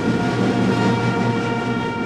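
Ceremonial brass band holding a long sustained chord, with drums rumbling underneath.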